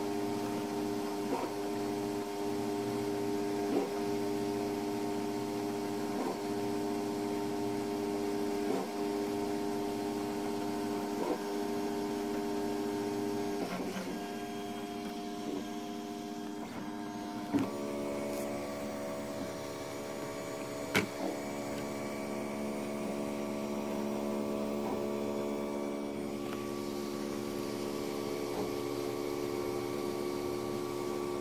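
Monoprice Select Plus 3D printer printing a first layer: its stepper motors whine in steady tones, with a light tick about every two and a half seconds. The pitch of the whine shifts a little past halfway and again near the end as the head changes speed, and there are a couple of sharp clicks around the middle.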